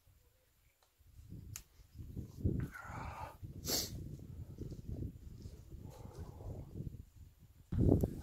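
Wind gusting over the microphone on an exposed mountain slope: an uneven low rumble starts about a second in, with a stronger hissing gust near the middle.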